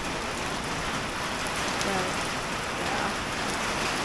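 Hurricane rain falling steadily on wet grass and pavement, an even hiss with no let-up.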